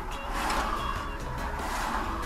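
Background music playing over a car passing close by; its noise swells about half a second in and fades away near the end, above a low steady rumble.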